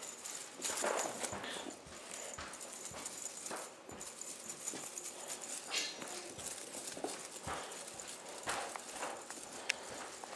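A cat and kittens scampering and pouncing on carpet in play: irregular soft thumps and taps of paws, with a sharper click near the end.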